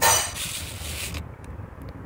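A soft rustle of a hand brushing through potted houseplant leaves for about a second, then a low steady background hum with a few faint clicks near the end.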